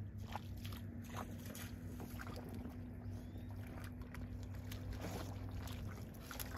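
A vehicle engine idling with a steady low hum. Scattered short clicks and rustles sound over it.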